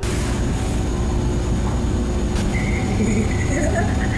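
A steady low rumble on a phone recording of a room while the phone is moved, with faint laughter starting near the end.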